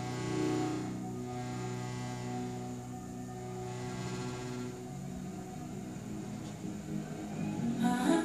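Slow music with long held chords playing from a television and picked up off its speakers in the room. The chords thin out about five seconds in, and a couple of short loud bursts come right at the end.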